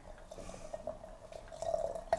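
A thin stream of just-boiled water poured from a porcelain pot into a porcelain teapot over loose herbal tea, a steady trickle that grows louder near the end.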